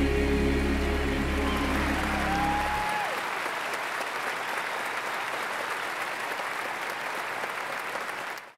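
Large concert audience applauding as the band's last held chord ends about three seconds in; the applause then carries on steadily.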